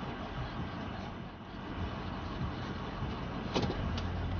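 Ford F-350 pickup driving slowly, a steady engine and road rumble heard from inside the cab, with one sharp click a little before the end.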